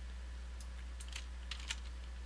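A handful of light, irregular computer keyboard and mouse clicks as the next line of text is selected, over a steady low electrical hum.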